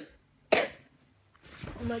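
A boy coughs once, a short harsh burst about half a second in, then starts speaking near the end.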